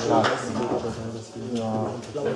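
A man's low voice, in two short utterances: one at the start and a second, briefly held one near the end.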